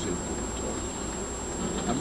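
Steady buzzing drone inside a car cabin, with a low rumble underneath.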